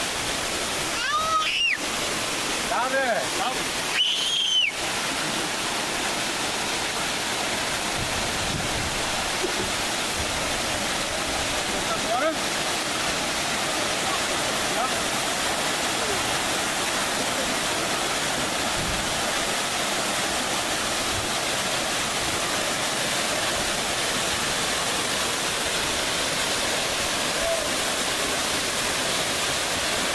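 Rancheria Falls: water pouring over granite boulders with a steady, unbroken rush.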